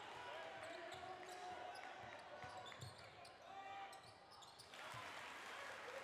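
Gym sound of a basketball game: a ball bouncing on the hardwood court in scattered knocks, under indistinct voices of players and spectators.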